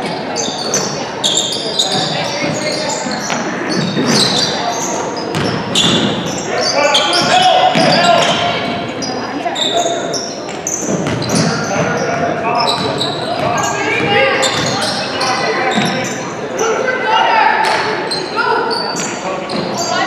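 Youth basketball game in a gym: a basketball bouncing on the hardwood floor and sneakers squeaking in frequent short, high chirps, over indistinct voices of players and spectators, all echoing in the large hall.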